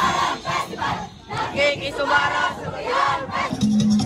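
A large group of street dancers shouting a chant together, a run of short group yells with a brief gap about a second in.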